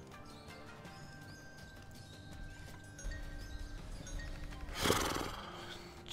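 Online slot game audio: quiet background music and short chime-like reel and win effects as spins run automatically. A louder, noisy sound effect bursts about five seconds in.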